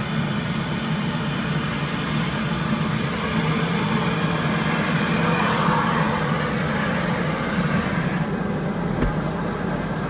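Helicopter turbine engine and main rotor running steadily on the ground, a loud even noise with a low hum. A faint high whine climbs slowly in pitch over several seconds, and the highest part of the sound drops away near the end.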